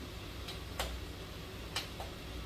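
Hands patting a ball of masa into a tortilla between the palms: a faint slap, then two sharp slaps about a second apart, over a low steady hum.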